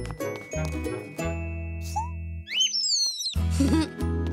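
Light jingling cartoon music. About two and a half seconds in it breaks off for a small bird's quick high chirps, three or four falling notes, and the music comes back near the end.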